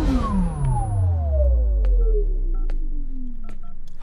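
A falling-pitch film sound effect: a tone with harmonics slides steadily downward over about three seconds and ends in a low rumble. A few short high beeps sound near the end.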